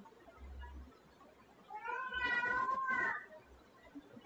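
A single drawn-out, meow-like call from about two seconds in, lasting about a second and a half, its pitch rising at the start and again at the end.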